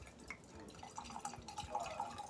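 Wine pouring from a bottle into a wine glass over frozen strawberries: a faint, steady trickle with small drips and splashes.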